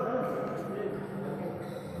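Indistinct voices of people talking, with a steady low hum underneath.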